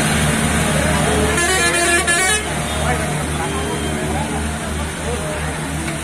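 Diesel engines of Hindustan tractors hauling loaded sugarcane trolleys, running with a slow, even chug of about three beats a second. A horn sounds for about a second, starting a second and a half in, and voices are heard in the background.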